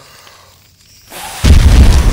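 Explosion sound effect, a barbecue blowing up in a fireball. A short rising rush about a second in leads to a very loud, deep rumbling boom about one and a half seconds in, which carries on past the end.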